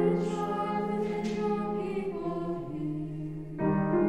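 A small group of voices singing a hymn in a sung evening service, holding long notes that step to new pitches about two and three and a half seconds in.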